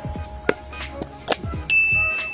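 Two sharp metallic clicks with brief ringing, then a steady high-pitched ding-like tone that starts near the end.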